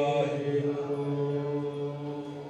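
A voice singing one long, steady note, chant-like, in Indian music.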